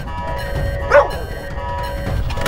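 A dog gives one short bark about a second in, over background music.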